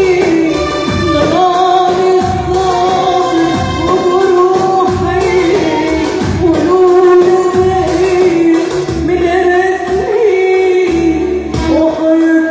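Live Arabic song: a woman singing into a microphone over an electronic keyboard accompaniment, amplified through loudspeakers, with long held, ornamented melodic notes over a steady beat.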